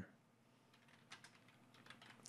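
Faint computer keyboard typing: a quick run of keystrokes in the second half as a short word is typed.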